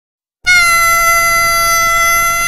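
Harmonica playing one long, steady high note that comes in suddenly about half a second in after silence, opening a 1960s R&B song.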